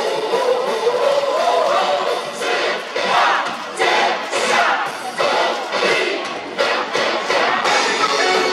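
A stadium cheer song plays loudly over the loudspeakers, with the crowd singing and chanting along.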